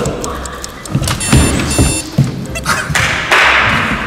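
Feet thudding on the floor as several people jump for a photo-booth shot, about a second in, followed by a loud rush of noise in the last second.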